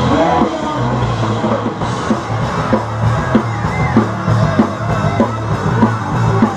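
Rock band playing a riff together on electric guitar, electric bass and drum kit, with regular drum hits over a steady bass line.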